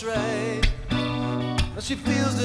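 Acoustic guitar strummed in a solo live performance, with a held melody note wavering in pitch over the chords in the first half second.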